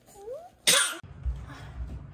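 A baby's short vocal sound gliding up and down in pitch, then a single loud cough-like burst. After that comes a low rumble of handling noise as the baby is picked up and carried.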